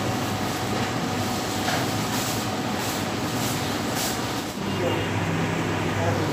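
Busy shop ambience: a steady roar of background noise with indistinct voices. There are a few soft rustles in the first part, and a low hum comes up about two-thirds of the way through.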